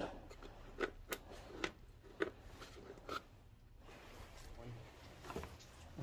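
Mostly quiet, with a few faint, scattered light taps and clicks at the engine's coolant drain plug and plastic catch bucket while the coolant drains.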